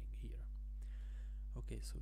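A man's quiet, half-whispered muttering, ending in a spoken "so" near the end, over a steady low hum.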